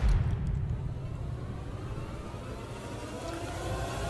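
A low rumble that starts abruptly and holds steady, with a faint rising tone above it: a bass-heavy sound effect from the edited video's soundtrack.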